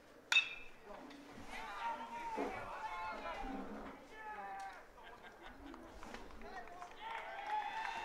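A metal baseball bat strikes the ball with one sharp, ringing ping about a third of a second in, on a home run hit. Spectators then shout and cheer.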